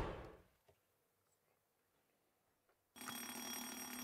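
Near silence, then about three seconds in a quiz-show buzzer sounds: a steady electronic ringing tone lasting about a second, as a contestant buzzes in to answer.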